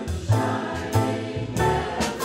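Mixed chorus singing a song, accompanied by upright bass and drum kit: low bass notes change about every half second under the voices, with cymbal strokes on the beat.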